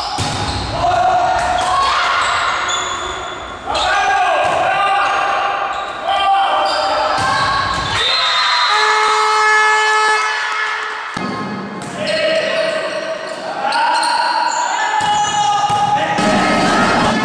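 Sports-hall sound of a volleyball game: the ball being hit and bouncing on the court, with voices shouting and chanting throughout, and a steady held tone for about two to three seconds in the middle.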